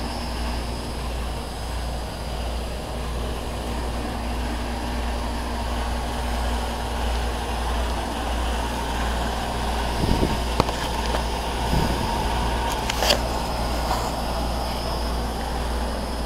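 Steady low rumble and mechanical hum, with a few brief clicks about ten and thirteen seconds in.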